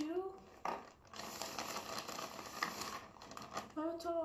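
Crinkling, rustling handling noise with small clicks and clatters, as things are moved about on a table; it starts about a second in and lasts until near the end, heard through a laptop speaker. A brief voice comes at the very start.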